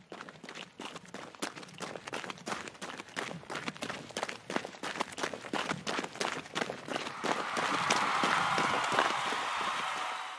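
Running footsteps sound effect: quick, regular steps that grow louder as if approaching. A rushing noise swells up under them about seven seconds in and is the loudest part.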